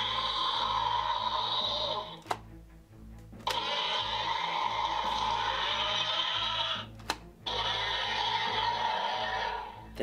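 Mattel Destroy 'N Devour Indominus Rex toy playing its electronic roar sounds through its built-in speaker: three roars of a few seconds each, with a sharp click between them, set off by the button inside its mouth that also lights up its throat.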